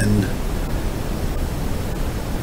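Steady, even hiss of background noise in a pause between spoken phrases, with the last of a man's word fading out just at the start.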